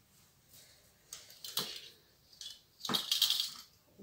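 A folding tripod light stand being handled and its legs opened: a few separate clicks and knocks, then a louder clatter of rattling about three seconds in.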